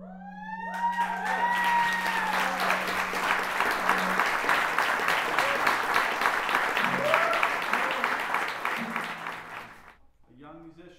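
Audience applauding with a few whoops, while a clarinet's final held low note carries on underneath and stops about four seconds in. The applause fades near the end.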